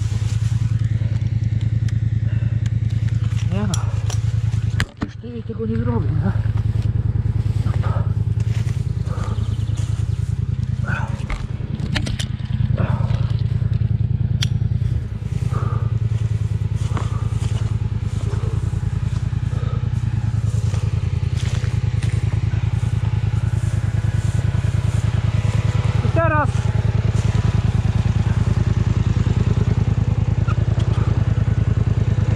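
ATV (quad bike) engine running steadily at idle, a low even drone with no revving. A few short voice-like sounds break in about four to six seconds in and again near the end.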